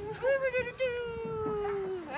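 Toddler crying out in protest, saying no: a few short high-pitched cries, then one long drawn-out wail that slowly falls in pitch.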